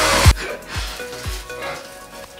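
Handheld hair dryer blowing, cutting off abruptly about a third of a second in. Background music with a steady kick-drum beat about twice a second plays throughout.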